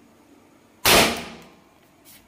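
Homemade lighter gun firing: the small iron pipe, heated by the lighter's flame, goes off with one sharp bang a little under a second in, fading out over about half a second.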